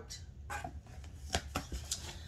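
Hands handling the flaps of a cardboard shipping box: a few short, sharp knocks and taps on the cardboard, about four of them in the second half.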